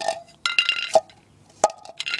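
Plastic toy garbage bin and its lid handled against concrete: a short high squeak of plastic rubbing, then a couple of sharp knocks.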